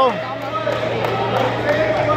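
Gym background noise: indistinct voices from onlookers over a steady low hum.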